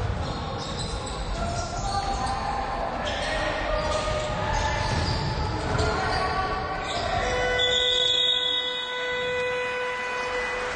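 Basketball game in a gym hall: the ball bouncing on the hardwood and players' calls. About seven seconds in, the arena's end-of-period buzzer sounds, one long steady horn note held for nearly three seconds as the game clock runs out.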